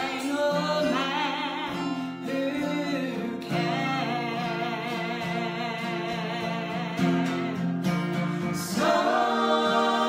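A woman singing a southern gospel song with vibrato, accompanied by acoustic guitar. Near the end two men's voices join her in harmony.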